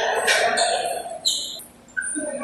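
Table tennis ball play: one loud, sharp, high-pitched knock of the ball a little past one second in.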